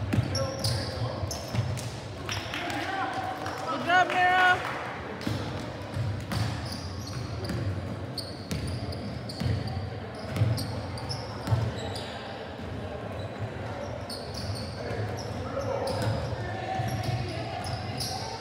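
A basketball bounces on a hardwood gym floor in short, scattered knocks, with a quick run of rubber-sole sneaker squeaks about four seconds in and players' voices, all echoing in a large gym.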